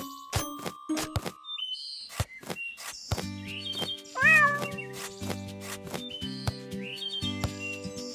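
A cat meows once, about four seconds in, over light background music. A few sharp knocks come in the first second and a half.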